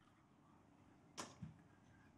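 Near silence: faint room tone of a quiet hall, broken a little over a second in by one short, sharp sound, followed at once by a softer low thump.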